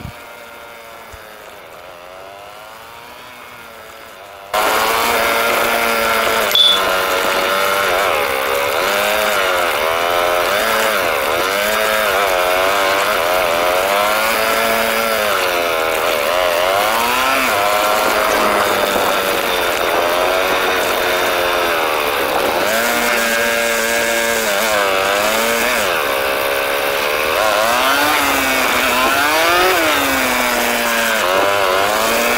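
Motorized bicycle's small gasoline engine running on the move, its pitch rising and falling again and again as the throttle is opened and eased. It is faint for the first few seconds, then suddenly much louder from about four and a half seconds in.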